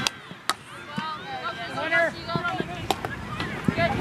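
Field hockey sticks hitting the ball: three sharp cracks, one at the start, one half a second later and one about three seconds in, amid distant shouting voices of players.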